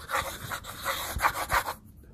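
Coloured pencil scratching on paper on a clipboard: rapid back-and-forth shading strokes, about five a second, stopping shortly before the end.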